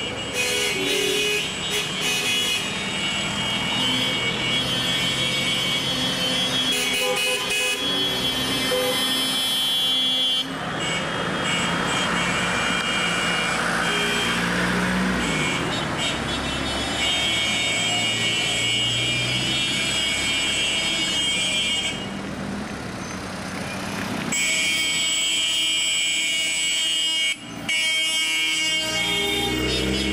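Several car horns honking in long, overlapping blasts over engine and road noise: the celebratory honking of a wedding convoy. The horns drop out briefly a few times, about ten seconds in and twice more near the end.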